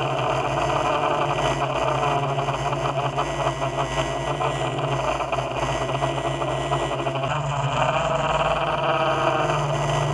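Yuneec multirotor drone's electric motors and propellers buzzing steadily, picked up by the GoPro it carries. The pitch of the hum steps up about seven seconds in and again near the end as the motor speeds change.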